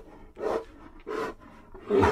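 Grizzly bear growling in three short, rough bursts, about two-thirds of a second apart, the last beginning near the end and the loudest.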